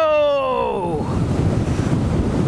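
Wind rushing over the camera microphone of an e-bike travelling fast, a steady low rush. It takes over about a second in, as a drawn-out shout trails off.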